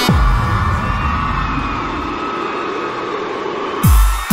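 Instrumental break in an electronic pop track. A deep bass hit drops in pitch at the start, then a held synth pad sounds muffled with its treble cut away. Near the end the full beat returns with another deep falling bass hit.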